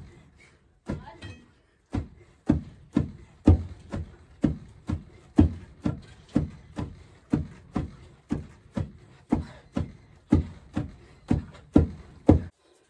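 Wooden pestles pounding mahangu (pearl millet) in a mortar hole in the ground, two pounders alternating strokes. The result is a steady run of dull thuds, about two a second.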